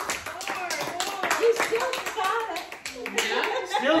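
A few people clapping by hand after a song, with talk and laughter over the clapping.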